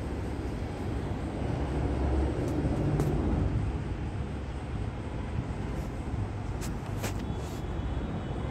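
Steady low rumbling background noise with hiss, and a few faint clicks.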